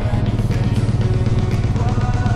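A background music track, with a quad bike's engine running underneath it.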